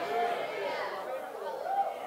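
Several voices from a seated congregation talking at once, low and indistinct, in response to the preacher.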